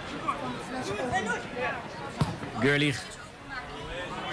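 A football kicked once: a single sharp thump about two seconds in, as the ball is struck long.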